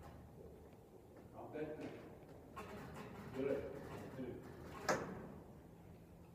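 Indistinct speech: a voice says two short phrases that cannot be made out, with one sharp click about five seconds in.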